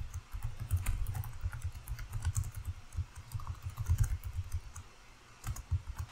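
Computer keyboard being typed on: a fast run of keystrokes for about four seconds, a short lull, then a few more keys near the end.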